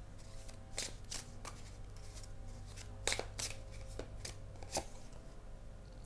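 A deck of tarot cards being shuffled by hand: soft card rustling with a handful of sharp, irregular card snaps, over a faint steady hum.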